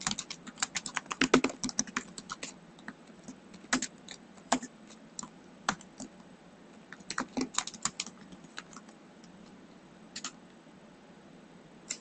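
Typing on a computer keyboard in irregular bursts: a quick run of keystrokes at the start, then scattered small groups of taps separated by pauses.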